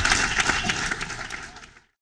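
A crowd applauding, many hands clapping, fading out to silence near the end.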